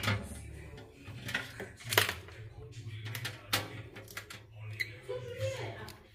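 Several light clicks and taps from handling multimeter test probes against a microwave oven's metal chassis during a continuity check, over a low hum.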